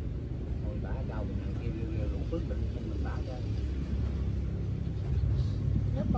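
An engine running with a steady low rumble that grows louder near the end, with faint voices over it.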